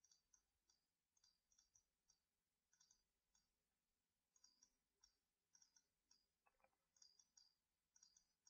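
Near silence with very faint computer mouse clicks scattered irregularly throughout.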